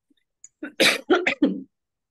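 A woman clearing her throat: a quick run of several rasps lasting about a second, starting about half a second in.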